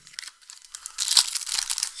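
Foil wrapper of a Magic: The Gathering Foundations play booster crinkling as it is handled and torn open, getting loud about halfway through, with a sharp snap soon after.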